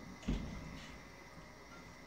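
A single dull thump about a quarter second in, fading quickly, followed by faint room noise.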